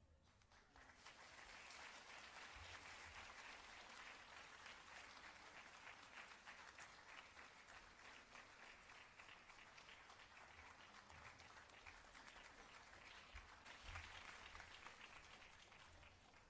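Faint audience applause, a dense patter of many hands clapping that builds about a second in, swells briefly near the end, then fades.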